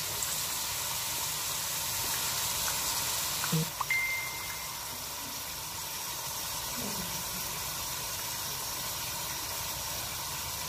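Meat and carrots sizzling in a hot pot as fish sauce is poured in from a bottle; the steady sizzle eases a little about four seconds in.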